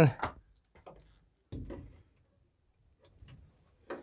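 A few faint knocks as the dryer's power plug is pushed into the wall outlet, then light clicks near the end as the Maytag dryer's timer knob is turned to start a cycle.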